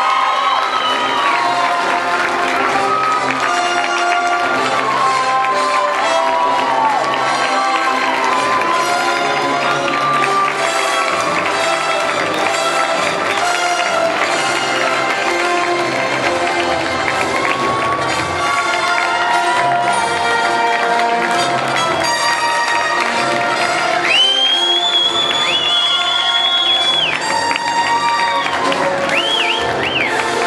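A banquet-hall crowd clapping and cheering over loud music.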